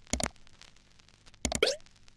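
Two short cartoon pop sound effects: one just after the start and a second about a second and a half in that ends with a quick drop in pitch.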